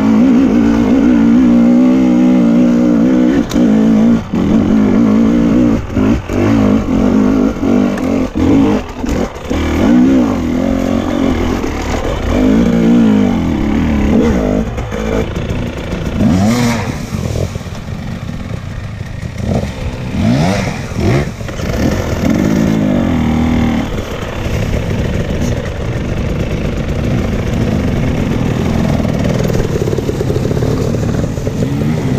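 Off-road dirt bike engine heard from on the bike, revving up and down with the throttle as it climbs a rocky trail, with knocks and rattles from the chassis over the rocks. Past the midpoint it drops to a lower, softer running with short revs as the bike slows among other dirt bikes.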